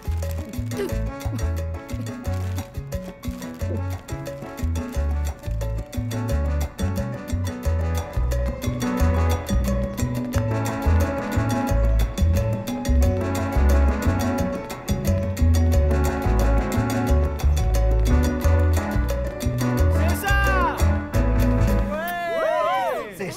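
Salsa band with trombone and bass guitar playing an upbeat number, with a strongly pulsing bass line. High sliding calls come in over the music near the end.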